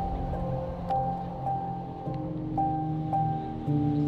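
Background music: held chords that change about halfway through and again near the end, with a higher note coming back over them several times.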